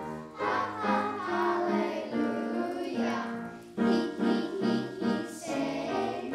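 A children's choir of young voices singing a song together.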